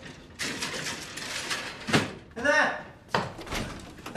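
A house door with a metal folding gate being opened and shut. There is rattling and clatter, a sharp knock just before two seconds in, a brief squeal, and a thud about a second later.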